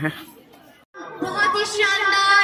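Crowd chatter that fades out, then after a sudden break about a second in, a voice over a loudspeaker with an audience murmuring behind it.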